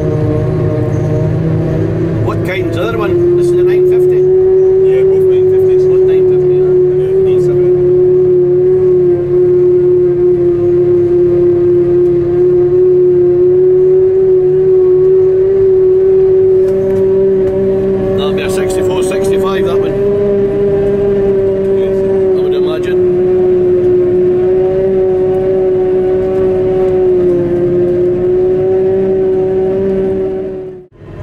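Claas Jaguar 950 forage harvester heard from inside its cab while picking up a grass swath: a loud, steady machine hum with a clear pitched whine. The hum rises a little in pitch and loudness about three seconds in, and there are a few brief rattles near the middle.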